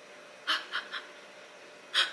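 Pages of a paperback book being leafed through: a few short, soft rustles, one about halfway in, two smaller ones just after, and another at the end.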